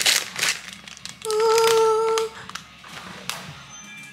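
A plastic wrapper crinkles briefly, then a person hums one steady note for about a second.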